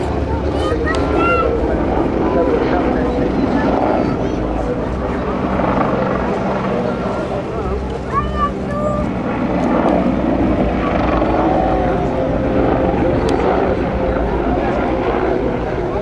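Eurocopter EC175 twin-turbine helicopter flying display manoeuvres overhead, its rotor and turbines running steadily, dipping slightly about halfway through, with voices in the background.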